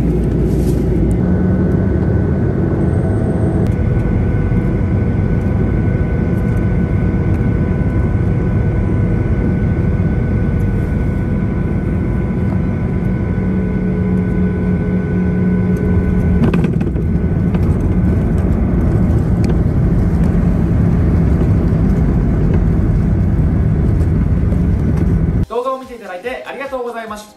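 Airliner cabin noise heard from a window seat: the loud, steady rush of jet engines and airflow, with a few steady engine tones running through it. It cuts off sharply just before the end.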